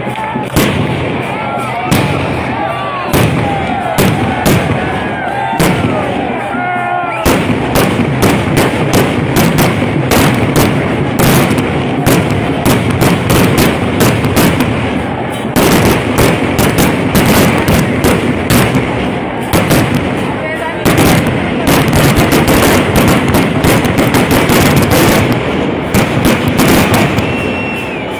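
A long, rapid, irregular run of sharp bangs that grows dense about seven seconds in and keeps going nearly to the end, with voices shouting over the first few seconds.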